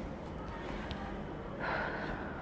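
Quiet pause with faint handling sounds and a light click about a second in, then a short breathy gasp from the woman near the end as she bends down.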